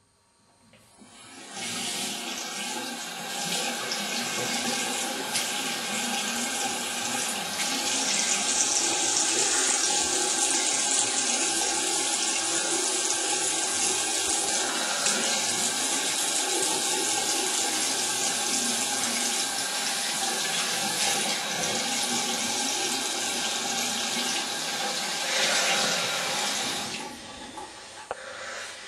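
Water running steadily from a tap into a sink. It comes up over the first couple of seconds and stops shortly before the end.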